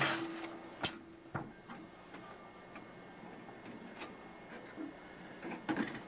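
Clicks and knocks from a desktop paper folding machine being handled as paper is taken out of its tray and the paper stops are slid along the fold plates, over a faint steady hum.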